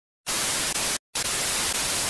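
TV-static sound effect: a steady hiss of white noise that cuts out briefly about a second in, then carries on.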